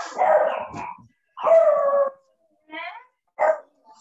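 A dog barking: four separate calls with short gaps between them, two longer ones first and then two short yips.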